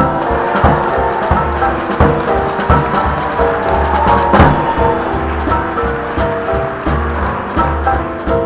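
Jazz big band playing, with horn-section chords over bass and drums keeping a steady beat.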